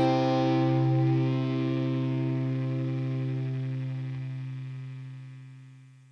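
The final held chord of a rock song ringing out on effects-laden electric guitar over a low sustained bass note. No new notes are played, and it fades slowly to near silence by the end.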